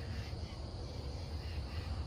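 Outdoor night ambience: a steady low rumble on the microphone with a faint, steady high chirring of insects such as crickets.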